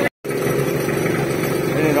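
A Hino fire truck's diesel engine runs steadily at a fixed speed while it pumps water through a suction hose from a canal. The sound cuts out completely for a moment right at the start.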